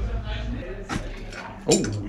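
Pliers working the headset nut of a bicycle whose fork sits loose in the frame: a couple of short metal clicks about a second in, then a man's short "oh".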